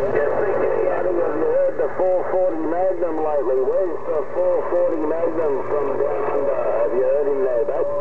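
A distant station's voice coming through the speaker of a Uniden HR2510 radio receiving on 27.085 MHz. It sounds thin and narrow-band, with no words that can be made out, over a steady low hum.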